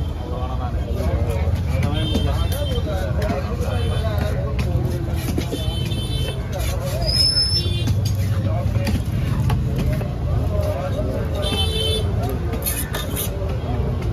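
Busy street-market noise: a steady low rumble of vehicle engines, short horn toots about three times, and a background babble of voices, with the scattered knocks of a heavy fish-cutting knife chopping into a wooden block.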